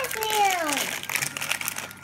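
Foil wrappers crinkling and crackling as they are peeled off treats by hand. A voice calls out once near the start, falling in pitch.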